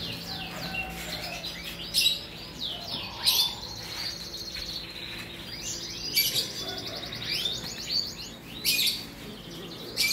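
Several caged canaries singing at once in full song: rapid high trills and chirps that overlap throughout, with louder bursts about two, three, six and nine seconds in.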